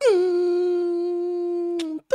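One long hummed note that slides down briefly at the start, then holds a steady pitch before stopping abruptly.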